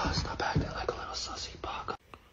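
A person whispering softly, getting quieter over the two seconds.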